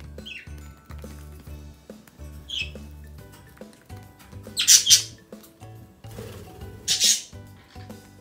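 Budgerigars chirping briefly twice, then giving two loud, harsh squawks about two seconds apart in the second half, over background music with a steady beat.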